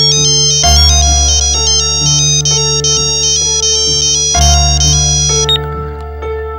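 Mobile phone ringtone: a high, electronic melody of quick stepped notes, over soft background music. It stops about half a second before the end, as the call is answered.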